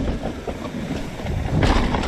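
Mountain bike rolling fast down a rough dirt trail: tyre noise with a dense clatter of knocks and rattles from the bike, growing louder about one and a half seconds in.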